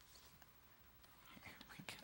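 Near silence, then faint rustling and a few soft clicks in the last half second or so as a ventriloquist's puppet is handled and lifted out of its case.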